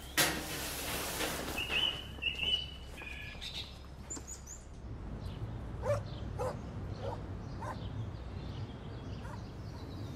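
Brief high thin calls in the first few seconds, then a low outdoor rumble with a scatter of short sharp animal calls about every half second.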